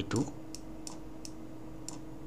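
Four faint, light clicks spaced irregularly, a third to two-thirds of a second apart, from a stylus tip tapping a pen tablet as handwriting is entered. A steady low hum runs underneath.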